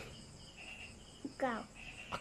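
Faint insects, likely crickets, chirping in high steady tones, with a short voice sound falling in pitch about one and a half seconds in.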